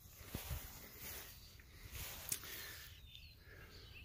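Faint outdoor farmyard ambience with a few soft clicks and faint distant bird chirps.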